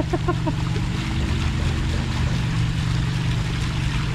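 Water from a tiered garden fountain splashing and trickling into a pond, a steady rush.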